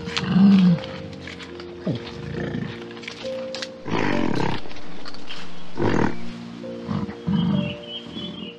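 Several low, loud animal calls, a few seconds apart, over steady background music.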